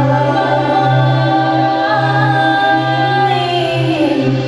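Indang dance music: a group of voices singing long, held notes in the Minangkabau style, the melody gliding downward near the end, over a steady low hum.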